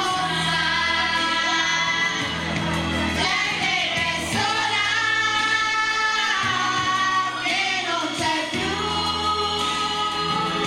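A group of women singing together into microphones over a karaoke backing track with a steady bass line.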